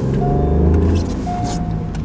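Ford 1.0-litre EcoBoost three-cylinder engine accelerating, heard from inside the cabin, its pitch rising then easing off about a second in. It is on the standard airbox and sounds like plain engine noise, with no turbo noise at all. A short beep repeats about once a second over it.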